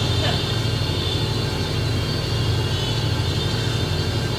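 A steady low rumble and hum with an even hiss over it, holding level throughout: the background noise of an open-air sermon's microphone and loudspeaker system in a pause between phrases.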